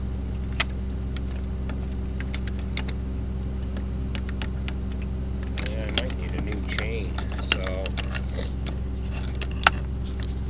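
Steel gathering chain of a corn head clinking and rattling as it is pulled and handled by hand, in scattered sharp metallic clicks. A steady engine hum runs underneath.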